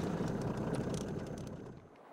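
Low, steady rumble of a car on the move, fading out towards the end.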